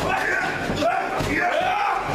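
A kick smacking against a wrestler's body near the start, followed by drawn-out yelling voices about halfway through.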